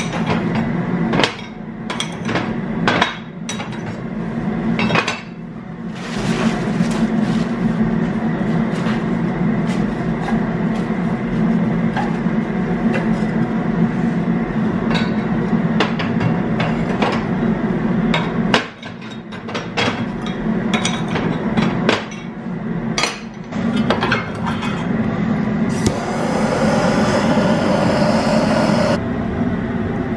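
Cast-iron lids of a wood cook stove being pried up with a lid lifter and set down on the stovetop: repeated metal clanks and scrapes over a steady low hum. Near the end comes a loud rushing noise lasting about three seconds.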